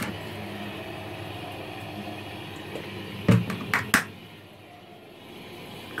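Steady low room hum in a small karaoke booth, with a few sharp knocks a little past three seconds and about four seconds in. The hum drops quieter just after the knocks.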